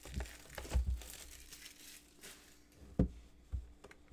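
Cellophane shrink wrap being torn and crinkled off a Panini Revolution basketball card box. It comes in several short crackles with a few soft thumps from the box being handled.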